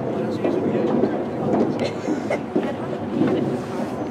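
Indistinct chatter of several people talking at once, mixed with a steady background rumble.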